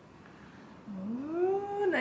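Quiet room tone, then about a second in a woman's drawn-out exclamation, her voice sliding up in pitch and holding for about a second before dropping, as she reacts to the room.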